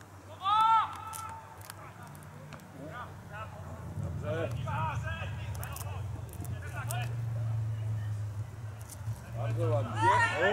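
Footballers' voices calling out across an outdoor pitch: one loud shout about half a second in, then scattered shorter calls, over a steady low hum.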